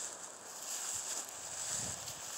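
Quiet outdoor night ambience: a steady high-pitched hiss, with a few soft shuffling sounds in the second half.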